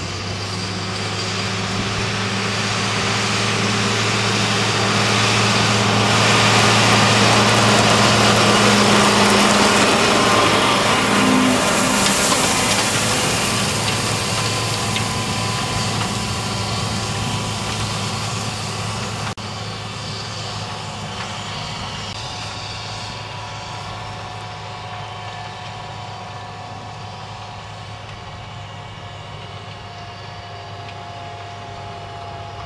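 Farm tractor engine running steadily while it pulls a planter with strip-till units through crop stubble, with a rushing, rattling noise from the implement working the ground. It grows louder as it passes close, then fades as it moves away.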